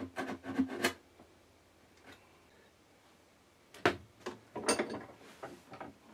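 A few quick strokes of a small fret saw cutting into a lacquered guitar body in the first second. After a near-silent pause, a handful of knocks and rubs near the end as the guitar is handled and turned around.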